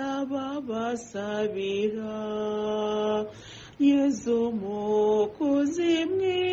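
A woman singing a slow, chant-like devotional hymn, mostly long held notes, with a short break about three and a half seconds in.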